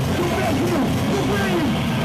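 A heavy band playing live and loud: a low, sustained distorted guitar and bass with shouted voices over it.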